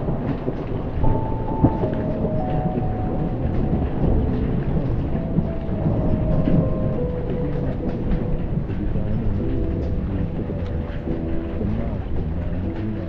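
Rolling thunder rumbling low and continuous over steady rain, with fine taps of raindrops. A faint tune of held notes, stepping from pitch to pitch, plays from the TV over the top.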